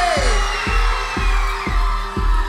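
Live crunkcore music through the club PA: a heavy kick drum about two beats a second over deep bass, with a held note sliding down in pitch just as it begins.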